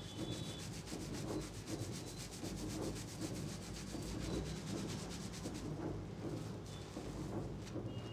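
Fingers scrubbing a shampoo-lathered scalp: fast, even rubbing strokes through the foam, turning slower and uneven near the end.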